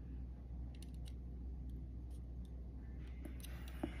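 Faint, light plastic clicks and scraping as a plastic pry tool works around the edges of a car remote key fob's battery holder, a few sharp ticks in the first half and one more near the end, over a low steady hum.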